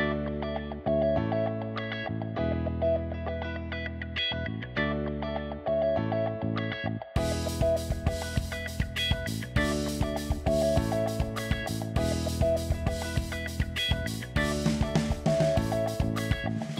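Instrumental background music led by guitar over a steady bass, with a regular beat joining about seven seconds in.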